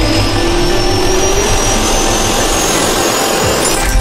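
Jet-engine spool-up sound effect over intro music: a rush of turbine noise with a high whine rising steadily in pitch, ending in a sudden hit.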